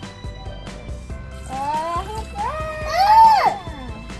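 Water poured from a plastic measuring cup into the plastic jar of a toy blender, over steady background music. A pitched sound rises and falls in the second half, loudest about three seconds in.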